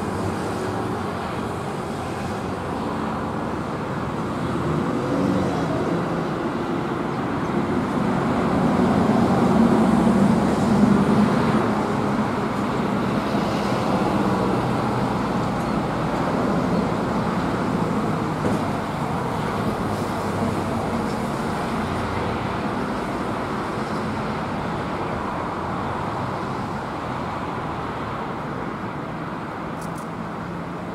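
Steady road-traffic noise, swelling to its loudest about ten seconds in as a vehicle passes, then settling back.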